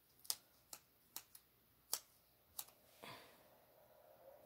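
Light, sharp clicks of fingernails tapping and pressing on a paper planner page, about six spread unevenly over the first three seconds, then a soft brushing of hand on paper a little after three seconds.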